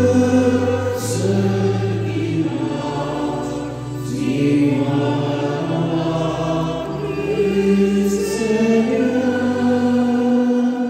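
A psalm being sung: a woman's solo voice in long held notes that move stepwise, with sustained low notes underneath.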